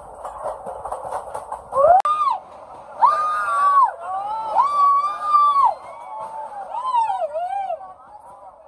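High-pitched voices calling out in long, drawn-out hoots and whoops, several in turn, each rising and falling, over a background of chatter.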